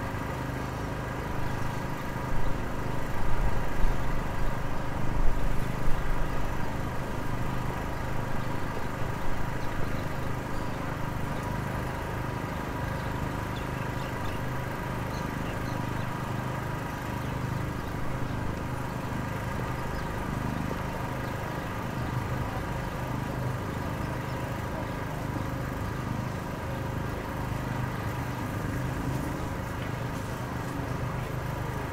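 Road-works machinery engine running steadily with a low hum and several steady tones. It gets louder and rougher for a few seconds near the start, then settles back.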